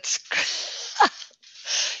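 A woman laughing: breathy, mostly voiceless laughter with a short squeal that falls in pitch about a second in.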